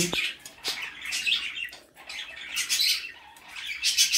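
Small parakeets chirping: a run of short, high chirps every half second or so, with a few gaps.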